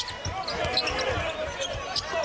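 Basketball being dribbled on a hardwood court during live play, with short squeaks and the voices of the arena crowd around it.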